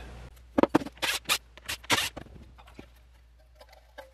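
A run of sharp clicks and knocks, then a few faint scrapes, from hands working on a tube amplifier head to power it down and pull its chassis, over a low steady hum.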